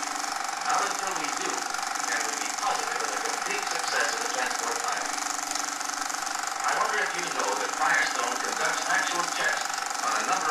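Worn optical film soundtrack played on a running film projector: indistinct, muffled voices under a constant hiss and steady hum, with the projector's mechanical chatter.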